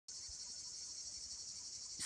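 Insects chirring outdoors: a faint, steady, high-pitched drone that does not vary.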